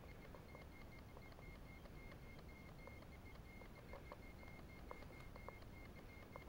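Near silence: faint forest ambience with a faint high tone that pulses rapidly and evenly, and a few faint ticks.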